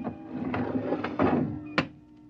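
Radio-drama sound effect of a sliding airlock door shutting: a click, a hissing slide lasting about a second and a half, then a sharp clunk near the end. A steady hum runs underneath.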